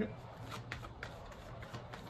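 Faint shuffling and handling of a tarot deck, a few soft, irregular card flicks.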